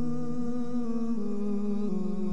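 Background music of sustained humming voices, slow held notes that shift to new pitches about a second in and again near the end.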